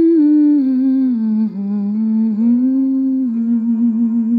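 A woman humming a slow hymn tune. It is one sustained line that slides down in pitch over the first second or so, rises a little, and settles into a wavering, vibrato-like held note near the end, over soft instrumental accompaniment.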